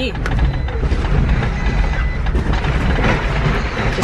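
Four-wheel drive moving slowly over rough ground through long grass, heard from inside the cab: a steady low engine rumble with scattered knocks and rattles as it bumps along.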